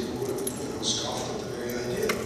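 A man's voice talking through a microphone and loudspeakers in a large hall: lecture speech only.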